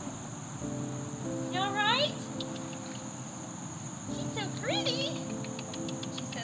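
A steady, high-pitched drone of summer insects, over background music with held low notes and two rising, wavering phrases about two and five seconds in.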